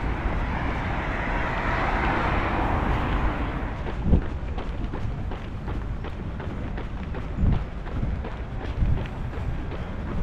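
A car passing on the road alongside, its tyre noise swelling and fading over the first few seconds. From about four seconds in come quick, even footfalls of running on a paved path, with low wind rumble on the microphone and a few heavier thumps.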